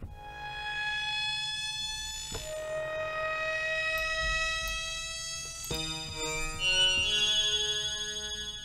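FXpansion DCAM Synth Squad Strobe software synthesizer playing factory pad presets. A sustained pad chord drifts slowly upward in pitch and changes about two seconds in. Near six seconds a brighter patch with shorter staggered notes takes over.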